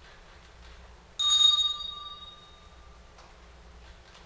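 Small handbell rung once: a sudden bright ring with clear high tones that dies away over about a second and a half.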